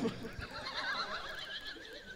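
A person laughing in a high, wavering pitch, quieter than the speech on either side, fading out near the end.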